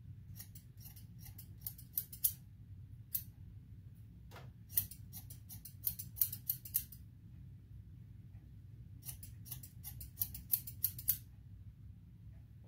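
Barber's hair-cutting scissors snipping short hair over a comb, in three quick runs of snips with pauses of about two seconds between them.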